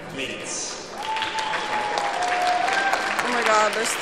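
Audience clapping, growing denser about a second in, with a long held cheering call over it.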